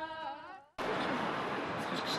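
Women's folk singing ends on a held, wavering note that slides down and fades out in the first second. After a brief silence, steady crowd murmur and street noise from a city square take over.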